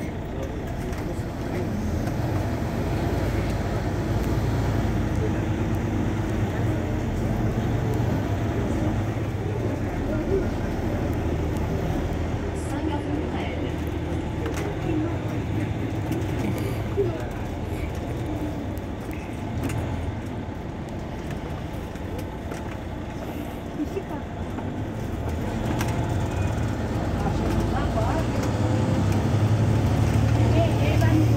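Mercedes-Benz Citaro C2 Euro 6 city bus idling at a stop, its engine a steady low hum that grows louder near the end.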